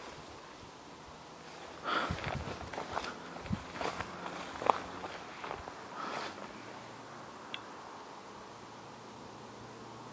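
Footsteps through long grass and weeds, the stems brushing and rustling, with a sharp snap a little before the middle as the loudest moment. The steps fade out after about six seconds, leaving only a faint hiss.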